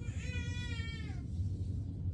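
A baby's single drawn-out, high-pitched vocal squeal lasting about a second, dropping in pitch at the end, over a steady low hum.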